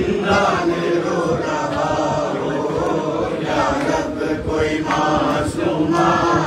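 A noha, a Shia lament, chanted unbroken in a slow melody, a boy's voice leading at the microphone with other voices joining in.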